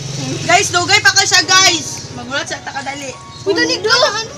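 Singing with background music: a voice carrying a wavering melody in short phrases, loudest in the first two seconds and again just before the end.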